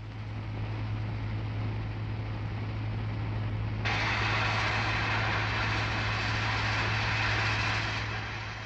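Experimental linear induction motor test vehicle running along its track: a steady electric hum under a rushing noise, which jumps abruptly louder and brighter about four seconds in.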